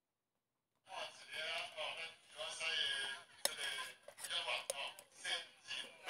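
A voice speaking, starting about a second in after near silence, with one sharp click about halfway through.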